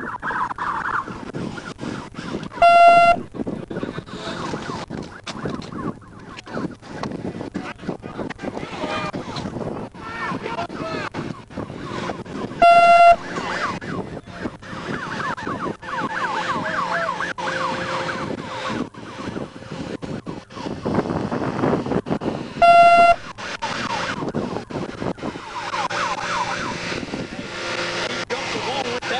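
Three short, steady electronic beeps, about ten seconds apart, are the loudest sounds, over indistinct voices. A beep repeating every ten seconds is typical of a police radio's priority alert tone, sent during an active pursuit.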